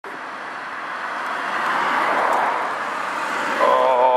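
Cars driving past close by on the road, the tyre and road noise swelling to a peak about two seconds in, then fading away.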